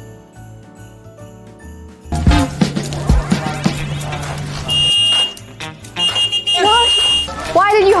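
A horn beeps twice, a short beep and then a longer one of about a second, over background music; a woman's voice follows near the end.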